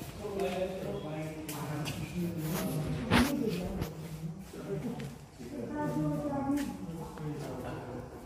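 People talking, with a single sharp knock about three seconds in.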